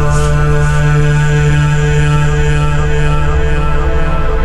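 Industrial techno/trance track: a sustained droning chord over a low bass, with hissy hi-hat-like strokes about twice a second that fade out within the first second.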